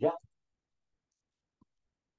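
The tail of a man's spoken word, then near silence with one faint click about one and a half seconds in.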